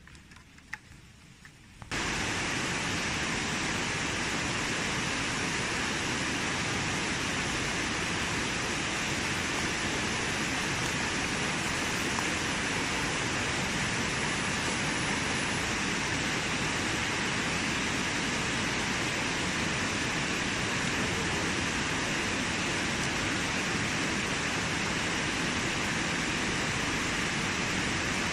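Automatic round-bottle labeling machine running with bottles on its conveyor, heard as a steady, even hiss that starts abruptly about two seconds in, with no distinct rhythm or tone.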